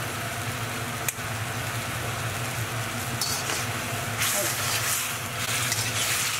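Diced tomatoes and ketchup sizzling in a hot wok, a steady frying hiss with a single click about a second in. The sizzle grows louder from about four seconds in as a metal spatula stirs the tomatoes.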